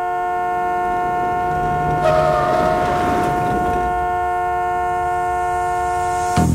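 A car horn held in one long, steady blast of about six and a half seconds, two tones sounding together, cutting off suddenly. About two seconds in, a burst of noise rises under it.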